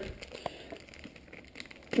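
Faint crinkling and small scattered clicks of a clear plastic packaging bag being handled as a small clip-on microphone is taken out of it.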